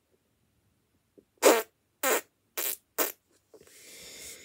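A child making four short, buzzy, fart-like blowing noises with his mouth, roughly half a second apart.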